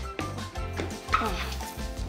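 Background music with a steady low bass, and a short high-pitched "oh" exclamation about a second in.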